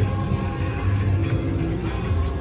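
Ainsworth Rhino Rumble 2 slot machine playing its free-games bonus music, a run of low held bass notes, as the reels spin and land on a win.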